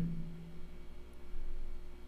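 A steady low hum with a few held tones under a faint hiss, in a small room.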